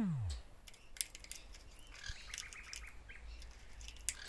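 A conure's short chirps, a quick run of them about two seconds in, with scattered sharp clicks of its beak working a plastic foraging toy.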